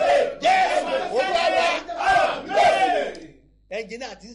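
A man's loud, raised voice calling out in long, strained syllables, breaking off about three and a half seconds in.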